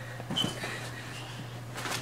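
Quiet room tone: a steady low hum with a few faint, brief noises.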